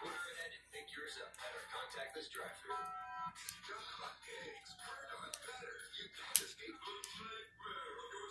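Speech and music from a television in the background, with a few sharp clicks of plastic Lego pieces being handled and pressed together; the loudest click comes about two-thirds of the way through.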